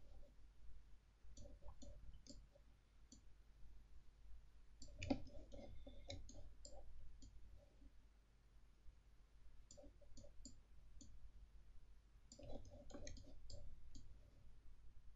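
Faint computer mouse clicks, coming in four scattered clusters of several quick clicks each, over a steady low hum.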